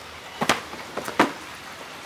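About three short knocks over a quiet background, from a rolled yoga mat being set down and moved on a bare terrace floor.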